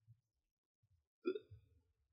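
A man's single short, hiccup-like chuckle about a second in, amid faint low thumps.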